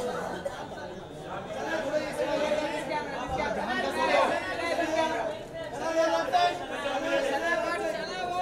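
Crowd chatter: many voices talking and calling out over one another, with no single voice clear.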